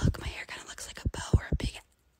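A person whispering, with a few short low thumps mixed in; it stops shortly before the end.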